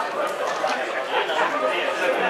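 Indistinct voices of several people at a football match talking and calling out over one another, with no one voice standing out.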